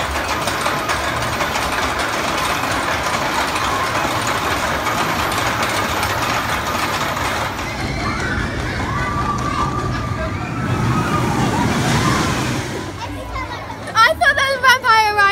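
Suspended roller coaster trains running along their steel track, a steady rumbling noise that swells a little near the end, with people's voices mixed in.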